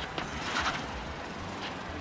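City street traffic noise: a steady low vehicle rumble under a broad hiss, with a few brief sharper sounds about half a second in.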